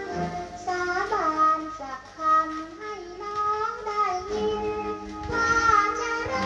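A woman singing an old Thai popular song in a high voice, the melody gliding between held notes over instrumental accompaniment. It is an old record played back through valve amplifiers and horn loudspeakers, and nothing is heard above the upper treble.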